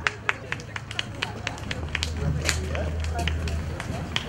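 Scattered applause: a small crowd clapping, the individual claps sharp and irregular, a few a second.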